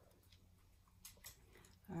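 Near silence: room tone with a low hum and a few faint light ticks about a second in.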